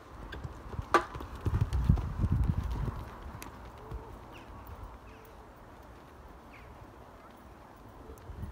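Horse's hoofbeats on the ground, a quick run of low thuds between about one and a half and three seconds in, after a sharp click about a second in.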